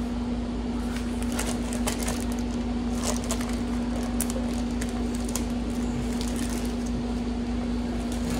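A steady hum with one low, even tone, typical of a running kitchen appliance or air-conditioning unit. Over it come faint, scattered rustles and clicks of a plastic zip-top bag being handled.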